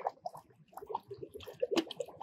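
Faint, irregular drips and small clicks of water from a wet, spent OBA canister handled over a bucket of water, with a sharper knock near the end.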